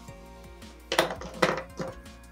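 Three sharp plastic clacks, starting about a second in: Prismacolor dual-tip markers knocking together and being capped as one is picked out of the pile. Background music plays under them.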